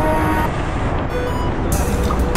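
Wind rush and road noise on an action camera riding in a pack of racing bicycles, with background music over it.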